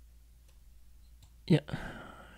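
Faint steady low hum, then a man says "Yeah" about a second and a half in.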